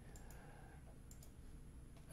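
Near silence with faint computer mouse clicks, two quick pairs about a second apart.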